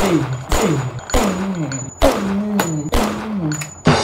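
A man's voice saying the Thai word 'sì' ('four') over and over, about seven times in quick succession. Each repeat is a short call that falls in pitch.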